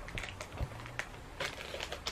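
Faint handling noise: a few soft knocks and rustles as a camera is set back in place.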